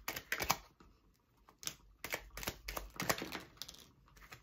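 Tarot cards being handled and dealt: a few sharp clicks and snaps of card stock at first, then after a short pause a quick run of card snaps and light slaps as cards are pulled from the deck and laid on the cloth-covered table.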